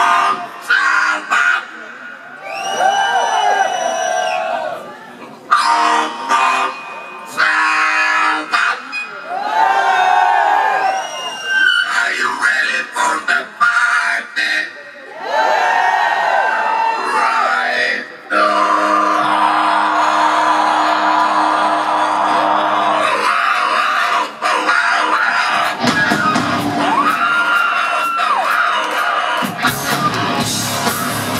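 Live hard rock in a small club: the singer's wordless held vocal calls, one after another, over crowd shouting, with a steady sustained chord ringing for several seconds in the second half and the band building back in near the end.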